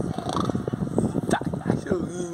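Playful baby-talk voice sounds made to an infant: quick, short vocal noises, with a few higher rising squeaks in the second half.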